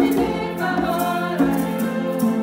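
A group of voices singing a song in Luxembourgish, accompanied by piano and violins.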